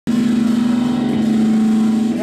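Live rock band holding one sustained chord, several notes ringing together as a steady loud drone that cuts in abruptly at the start.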